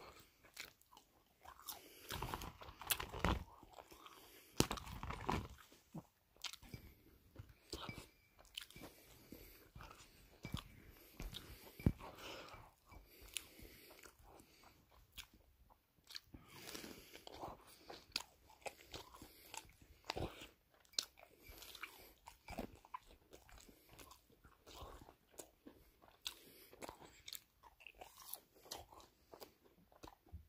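Close-miked biting and chewing of crunchy chicken, with irregular sharp crunches throughout.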